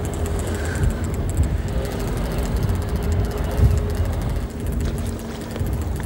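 Steady low rumble of wind and a boat's engine at sea, with a faint even hum running through it.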